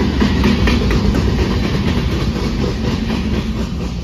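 Freight train cars rolling past: steel wheels rumbling and clacking over the rails, with sharp clicks in the first second. The sound fades near the end as the last car goes by.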